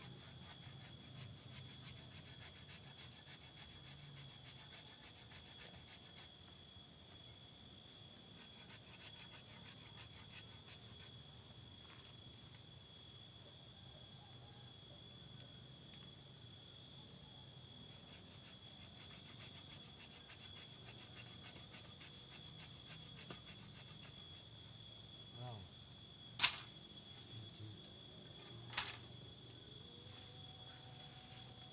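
Insects chirring steadily in the forest, a fast high-pitched pulsing buzz. Near the end, two sharp knocks about two seconds apart stand out above it.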